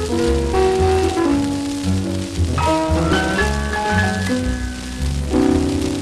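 An old disc record playing a melody of held notes over a guitar and rhythm accompaniment with a repeating bass, under a steady hiss and crackle of surface noise.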